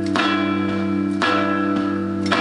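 Acoustic guitar strummed hard in an instrumental passage: a strong strum about once a second, each chord left ringing over steady low notes.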